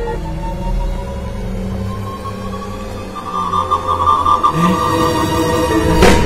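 Tense, ominous film-score music: a high tone rises slowly over a low drone, then turns into a quivering, pulsing tone about halfway through.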